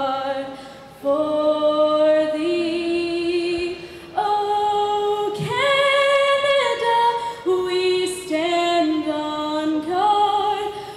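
A woman singing a slow melody without accompaniment, holding each note for up to a second or more, with brief breaks between phrases about a second in and about four seconds in.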